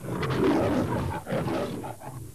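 The MGM logo lion roaring twice: a first roar of about a second, then a second, shorter roar ending near the end.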